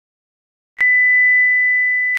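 A TV colour-bars test tone: one loud, steady, high-pitched beep that starts suddenly about a second in and cuts off abruptly. It is the signal of a broadcast interruption, 'technical difficulties'.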